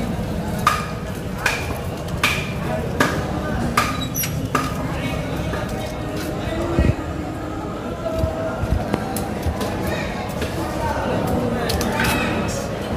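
Machete chopping into a large tuna: six sharp strikes about three-quarters of a second apart in the first half, each with a brief metallic ring, then one dull thump a little past the middle, over a steady murmur of voices.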